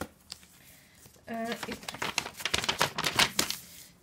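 A folded sheet of lined paper rustling and crackling as a letter is unfolded by hand, a rapid run of crinkles for about two seconds after a quiet start.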